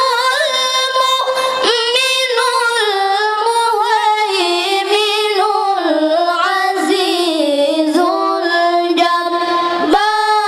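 Boy qari's high voice reciting the Qur'an in melodic tilawah style into a microphone, drawing out long ornamented notes with wavering pitch; the melody sinks gradually lower across the phrase.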